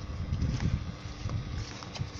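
Wind buffeting the microphone outdoors, a low rumble that rises and falls unevenly.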